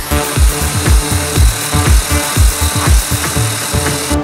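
Electronic dance music with a steady beat, mixed over a handheld diamond core drill running as it bores into brick. The drill's hiss stops abruptly at the end.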